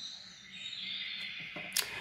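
Faint handling of a paper oracle card: a soft, steady scraping hiss as it is moved in the hands and over the table, then one short click near the end.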